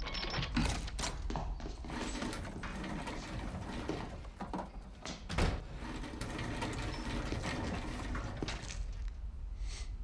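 Television drama soundtrack with no dialogue: a steady low drone under scattered knocks and rustles, with one sharper hit about five and a half seconds in.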